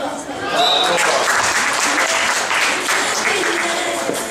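Spectators clapping, breaking out about a second in and running on densely, with voices and some music over it: applause for the end of a rally.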